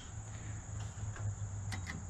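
Steady high insect chirring with a steady low hum beneath it, and a few faint clicks near the end.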